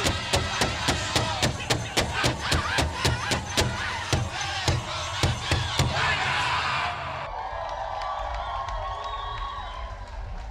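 Powwow-style drum song: a fast, steady drumbeat of about four beats a second under wavering voices. It stops abruptly about seven seconds in, leaving audience cheering and crowd noise.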